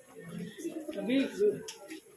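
Indistinct talking of nearby people, in short broken phrases with no clear words.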